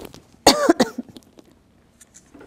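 A woman coughs briefly about half a second in.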